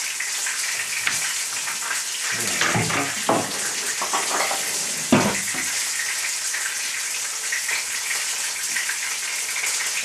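Fish fingers frying in a pan with a steady sizzle. A few knocks from a knife and a wooden cutting board as a cucumber is sliced and the board is handled, the loudest about five seconds in.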